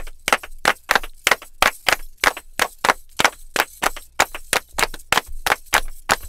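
Percussion: a fast run of sharp strikes, about five a second in a loose, uneven rhythm.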